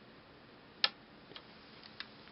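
Sharp click of a small PCB relay (SRD-S-105D) on a supercapacitor charger board, followed by a couple of fainter clicks. It is the relay switching as the capacitor bank reaches its full charge of about 5.3 volts.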